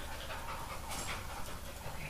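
A dog panting softly, with a brief click about a second in.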